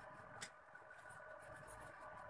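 Faint pencil strokes scratching on drawing paper, with a single click about half a second in, over a steady low hum.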